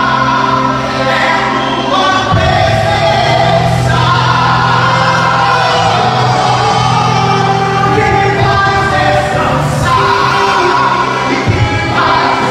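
Live gospel worship song: two male singers on microphones over band accompaniment, with sustained bass notes that change about two seconds in and again near the end.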